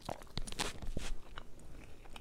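A person chewing a mouthful of thick French-toast pancake close to the microphone: a run of irregular mouth clicks and smacks, most of them in the first second and a half.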